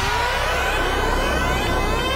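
Electronic music build-up: several synth tones sweeping steadily upward in pitch over a low bass drone, like a riser before a drop.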